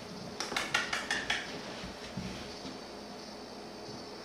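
A puppy's claws clicking on a hardwood floor as it scrambles after a tennis ball: a quick, uneven run of about eight light clicks in the first second and a half, then quieter.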